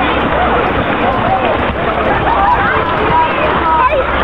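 Several children's high-pitched voices calling out over the steady rush of creek water flowing over rock.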